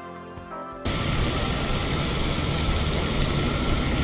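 Soft background music for about the first second, cut off abruptly by a steady, louder rush of outdoor noise with a fluttering low rumble.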